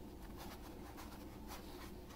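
Gloved hands handling a roll of paper towels: several soft, scratchy rustles over a low steady hum.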